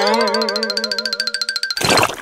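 Cartoon-style logo sound effect: a buzzing boing whose pitch wavers up and down, ending in a short whoosh.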